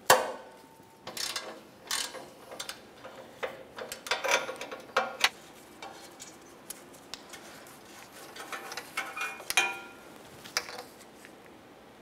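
Irregular metallic clicks and clacks as a downstream oxygen sensor is unscrewed from the exhaust pipe: a 3/8-drive ratchet on a slotted O2 sensor socket, then the sensor turned and pulled out by hand. The sharpest clack comes right at the start, with scattered clicks and light scraping after.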